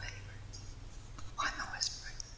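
Quiet, soft speech, close to a whisper, in short phrases over a low steady hum.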